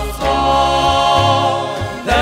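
Live Slovenian folk music: button accordion, acoustic rhythm guitar and a plucked double bass (berda) playing, with a male vocal group singing in harmony over a steadily walking bass line.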